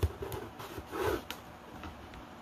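Handling sounds as masking tape is pressed onto paper wrapped around a cardboard shoebox: a few soft taps and a brief paper rustle in the first second and a half.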